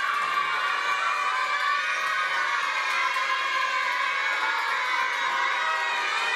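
A group of young boys cheering and shouting together, many high voices overlapping without a break.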